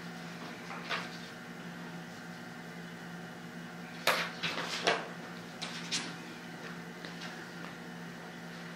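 A small room's steady low hum, broken by a few short clicks and knocks, the loudest about four and five seconds in.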